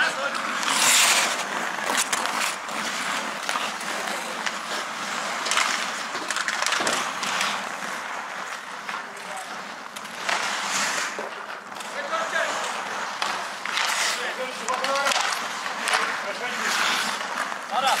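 Ice hockey skate blades scraping and carving on rink ice in repeated bursts every few seconds, with players' voices calling out, most clearly near the end.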